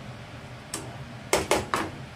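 A cooking utensil knocking and scraping against a frying pan while stirring pork, eggplant and onion: one light click, then three sharp knocks in quick succession near the end.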